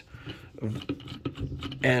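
Light plastic clicks and knocks as an LMI PVDF multifunction valve is pushed and turned onto the threaded valve housing of a dosing pump head, with a low voiced hum over it.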